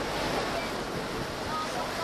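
Steady rush of wind on the microphone mixed with the wash of water around a boat.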